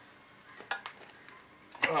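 A few light metallic clinks, two of them close together about the middle, as a steel pry bar works against the metal pads of an over-the-tire skid steer track to pop the front pad up.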